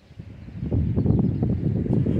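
Wind buffeting the microphone: a rough low rumble that builds about half a second in and stays loud.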